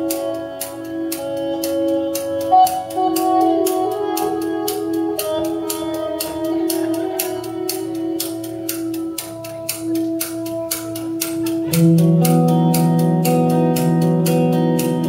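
A live rock band plays an instrumental passage. Sustained electric guitar and keyboard notes ride over a drum kit keeping a steady beat of about four strokes a second. The music gets fuller and louder about twelve seconds in, as a low note comes in.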